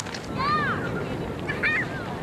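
Goose honking: two short calls that rise and fall, about a second apart, over steady outdoor background noise.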